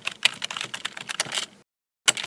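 Computer keyboard typing: a rapid run of key clicks, about ten a second, stopping shortly before the end.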